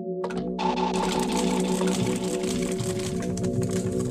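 Paper pages of a thick handmade journal rustling and crinkling as they are turned and handled, starting about half a second in, over steady background music.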